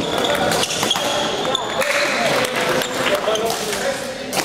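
Badminton rally sounds: sharp racket hits on the shuttlecock and court shoes squeaking on the sports floor as a player lunges, over voices in the hall.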